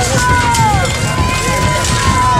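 Long drawn-out shouts from many voices, the pitch held and then falling away, over a dense din of irregular thumps from an armoured melee battle.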